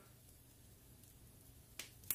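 Near silence: a pause in speech, with a faint low room hum and one faint short click near the end.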